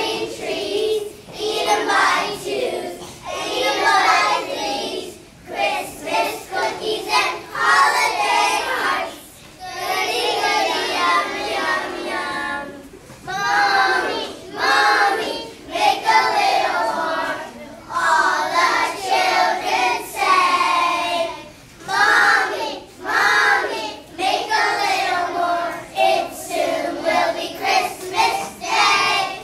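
A group of young children singing a song together, in short phrases with brief breaks between them.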